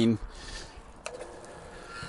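Faint hiss of water spraying from the jets of two water-fed pole brushes, with a single sharp click about a second in, followed by a faint steady hum.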